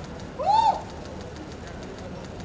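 A single short high-pitched whoop from a young woman in the crowd, rising and then falling in pitch, about half a second in, over a steady low crowd background.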